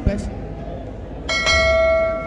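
A bell struck once about a second in, ringing with several clear tones and fading over about a second and a half; at this point in the quiz it marks the end of the time for an answer.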